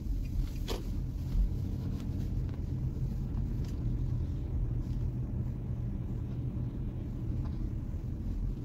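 Car driving slowly, heard from inside the cabin: a steady low rumble of engine and tyre noise.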